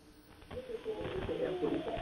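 A caller's voice speaking over a telephone line, faint and thin, starting about half a second in after a brief near-silent pause.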